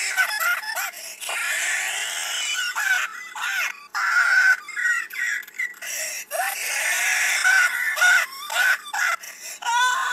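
A person's laughter run through a voice-changer app, pitched up into long, wavering, wailing bursts with short breaks between them.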